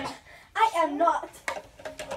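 A girl's voice, a short stretch of speaking or calling out lasting about half a second, followed by a few light clicks near the end.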